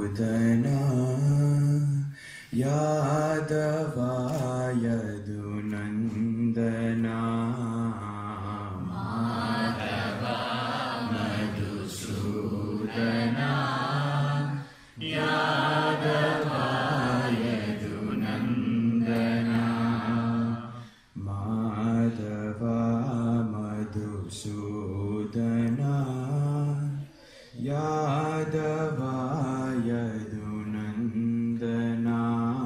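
A group of men's and women's voices chanting Sanskrit mantras together over a microphone, long held tones on a few steady pitches, breaking briefly for breath about four times.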